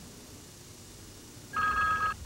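A quiet stretch, then about one and a half seconds in a telephone starts ringing with a steady electronic two-tone ring.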